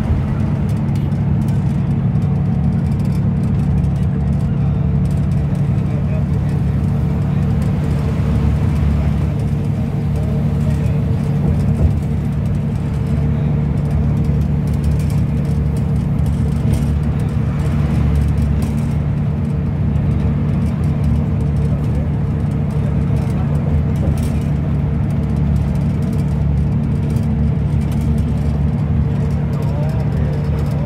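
Steady engine and road drone of a moving bus heard from inside the cabin, with a constant low hum.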